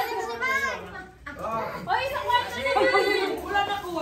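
Several people talking over one another in a room, some voices high-pitched, with a brief lull about a second in.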